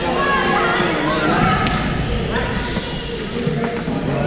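Indistinct voices of many players echoing in a large gymnasium, with one sharp hit about one and a half seconds in and a few fainter knocks.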